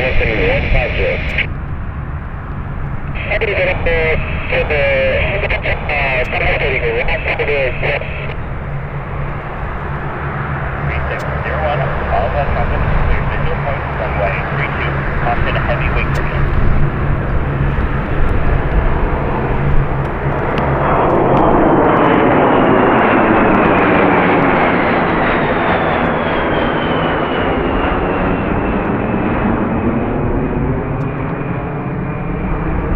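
ShinMaywa US-2 amphibian's four turboprops running as it taxis, a steady low propeller drone. From about two-thirds in, a jet passing overhead swells into the loudest sound, its whine falling in pitch as it goes by.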